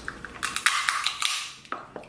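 Snow crab leg shell being cracked open: a quick run of sharp cracks and crackling through the first second, then a couple of fainter cracks near the end.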